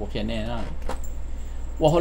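A man speaking Hmong, with a brief metallic jingle near the middle from the silver coins hanging on his traditional Hmong vest, over a steady low hum.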